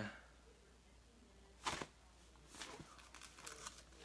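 Bible pages being turned by hand: a sharp paper rustle about a second and a half in, then a few softer rustles.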